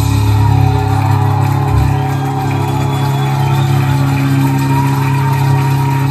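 Live rock band holding one long sustained chord, loud and steady, played through the club's PA.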